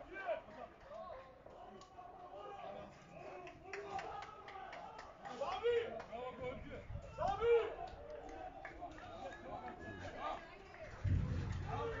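Several voices shouting and calling out at a distance across a football ground, overlapping, with louder shouts about six and seven and a half seconds in.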